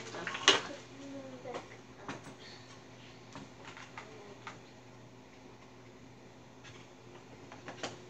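A sharp click about half a second in, then scattered lighter clicks and knocks: coins being handled and put back into their holders.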